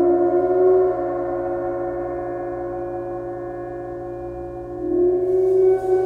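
24-inch Chinese chau gong sounding a sustained, layered hum of several tones as a small rubber-ball mallet is drawn across its face. The sound swells twice, at the start and again about five seconds in, and the lowest tone bends slightly upward each time.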